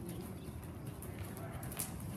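Hoofbeats of a horse being led at a walk on the soft sand footing of an indoor riding arena, with a brief sharp click near the end.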